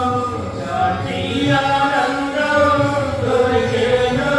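Stage singers singing a Telugu Christian devotional song, with long held, gliding notes.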